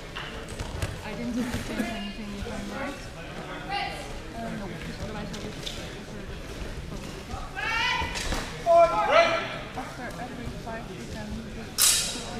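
Voices echoing around a sports hall, with irregular light knocks of footfalls on the mat as two fencers move about the ring. There is a louder shout around eight seconds in and a sharp crack of an impact near the end.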